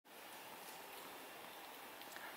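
Faint, steady hiss of room tone with no distinct event.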